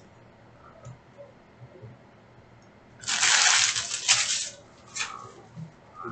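Foil trading-card packs rustling and sliding against one another as they are dealt by hand into two stacks. The first half holds only a few faint ticks. About halfway in comes a loud rustle lasting about a second and a half, then a shorter one near the end.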